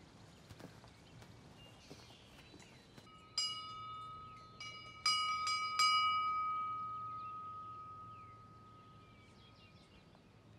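A church bell struck four times in quick succession, about three seconds in, its clear ringing tone dying away slowly over the following few seconds.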